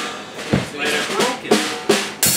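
Drum kit struck a few times at an uneven pace, snare and bass-drum hits, each ringing briefly: loose hits rather than a steady beat.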